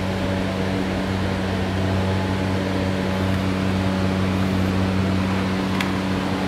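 Steady low machine hum, even and unchanging, of the kind an air conditioner or fan makes, with one brief click near the end.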